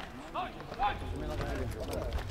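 Players' shouts on an amateur football pitch: several short calls one after another.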